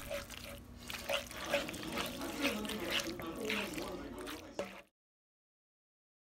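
Wooden spoon stirring sauce-coated pasta shells in a skillet: irregular wet squishing and light scraping, stopping abruptly about five seconds in.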